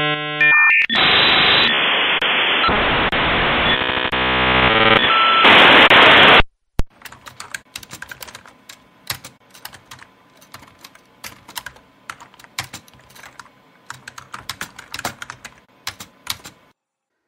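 A loud electronic sound of tones and dense hiss that cuts off suddenly about six seconds in, followed by irregular typing on a computer keyboard.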